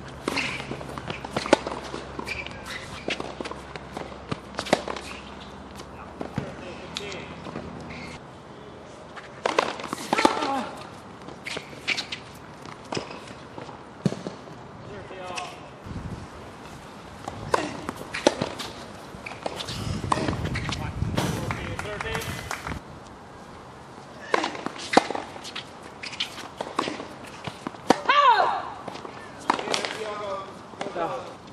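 Tennis ball struck by rackets and bouncing on a hard court, sharp pops at irregular intervals of a second or more, with people's voices from players and spectators between the shots.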